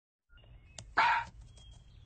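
A dog barks once, a single short bark about a second in, with a few faint clicks around it.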